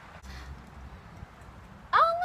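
Low background with a faint low rumble and a light knock, as water is scooped from a metal bucket into a cup; right at the end a girl lets out a loud, high-pitched squeal that falls in pitch.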